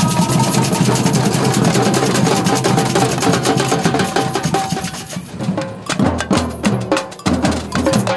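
Samba batucada drum band playing, with large surdo bass drums and other hand-carried drums in a dense, fast groove. About five seconds in the groove thins out into a sparser pattern of separate loud hits with deep bass.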